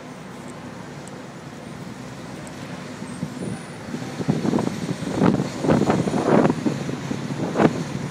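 Open-top double-decker tour bus running along a city street, with a steady low engine hum. From about halfway through, louder irregular rumbling surges come in.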